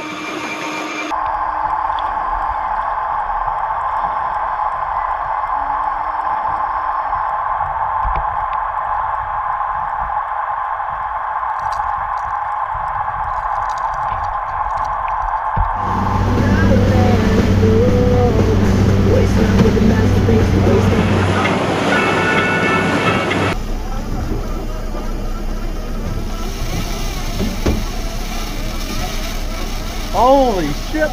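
Shimano electric fishing reel's motor whining steadily as it winds line in under heavy load, a fish the angler takes for a good shark. Near the middle the whine gives way to a lower, different hum.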